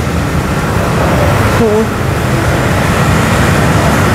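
Steady, loud background noise of low hum and hiss, broken by a brief spoken sound a little before two seconds in.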